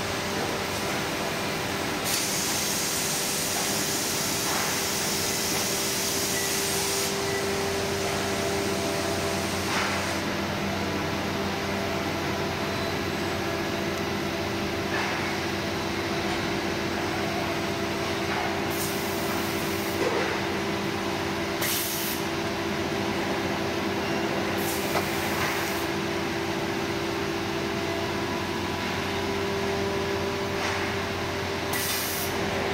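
Automated pallet conveyor and labelling line running with a steady machine hum made of several constant tones. A long hiss of compressed air comes about two seconds in and lasts around five seconds, and three short air hisses follow later as the labeller applies a label to the pallet.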